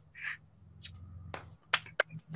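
Scattered hand claps from a few people on a video call, heard as about four thin, sharp claps through the call audio, the loudest near the end.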